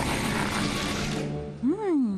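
Cartoon transition music with a broad rushing sweep that fades out about a second in. Near the end a character's voice cries out, its pitch rising and then falling.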